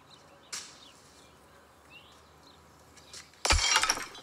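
A ceramic flowerpot smashes on a stone floor near the end: a short, loud crash of breaking pottery. Before it there are faint bird chirps and a single sharp click about half a second in.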